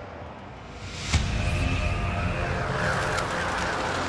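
Trailer score music: a low rumbling haze fades, then a sudden hit about a second in gives way to sustained held tones.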